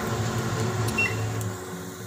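A steady low hum with an even hiss over it, which fades out about one and a half seconds in.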